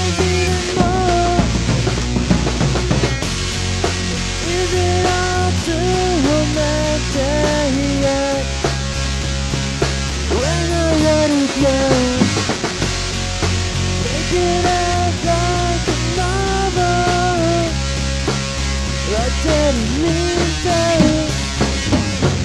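Home-recorded rock trio playing: a bending, sliding guitar melody over bass guitar and drums.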